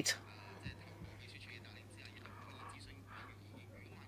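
Faint, indistinct voices murmuring in a quiet meeting room over a steady low electrical hum, after a man's speech cuts off at the very start.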